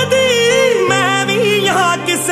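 Song playing: a solo voice holds a wordless, wavering melismatic line over sustained backing chords.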